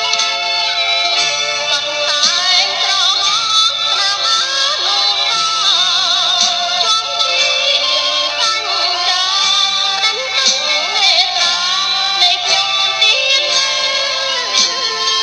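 Khmer popular song: a solo voice singing a melody with a strong wavering vibrato over steady instrumental backing.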